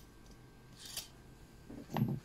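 Small metal parts of a jet engine's shaft assembly handled on a workbench: a brief light metallic scrape with a click about a second in. A short vocal sound follows near the end.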